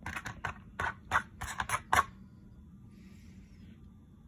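A quick, irregular run of light clicks and taps, about a dozen in the first two seconds, that then stops. A faint soft scrape follows about three seconds in.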